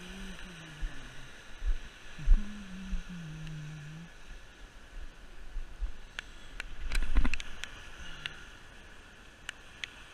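Waves washing against the rocks of an ocean jetty, with wind buffeting the microphone in low thumps. A low hum sounds twice in the first four seconds, and there are a few light clicks of rod-and-reel handling.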